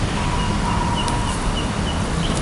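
Faint bird calls, a short high note repeated several times over a held tone, against steady outdoor background noise.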